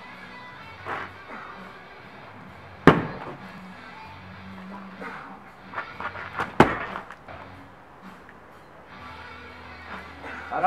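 Background music, broken by two sharp thuds about four seconds apart from a thrown strongman throwing bag striking, with a few smaller knocks between them.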